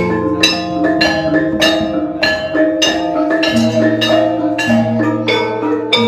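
Javanese gamelan ensemble playing: bronze metallophones struck with mallets in a steady pulse of ringing notes. A deep sustained tone comes in about halfway through.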